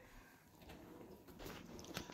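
Near silence: room tone, with a few faint soft ticks in the second half.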